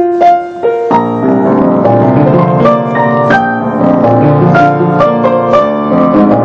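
Piano played with both hands: a few single notes open it, then from about a second in a melody carries on over chords in the low keys.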